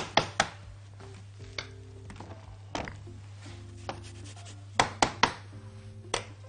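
Fresh ginger grated on a flat metal hand grater: about three quick scraping strokes at the start, then a few scattered knocks.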